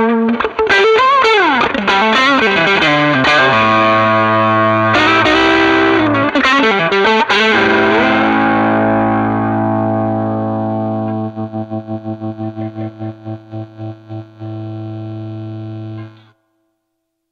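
Pérez Martínez Telecaster-style electric guitar played through a small tweed-covered combo amp with overdrive: a lead line with string bends, then a held chord that rings on, broken by a short lick, and slowly fades. Near the end the fading chord pulses in volume about three times a second.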